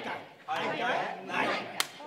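People talking on stage, then a single sharp crack near the end, like a hand clap or slap.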